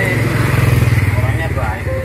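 Motorcycle engine running past, rising to its loudest about half a second in and fading away after about a second and a half.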